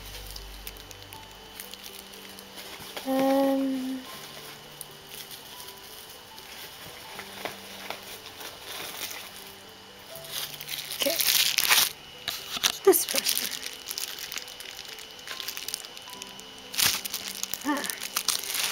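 Clear plastic packaging and bubble wrap around a pin crinkling in bursts as it is handled, loudest from about ten to thirteen seconds in and again near the end. Soft background music of long held notes runs underneath.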